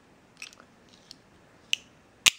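A few faint, brief clicks of an automatic knife's mechanism as the blade is folded back closed and locked, the sharpest near the end.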